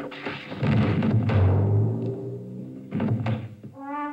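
Heavy knocking thumps from a cartoon soundtrack playing over a hall's speakers, with music behind them; a second, shorter burst of thumps comes about three seconds in.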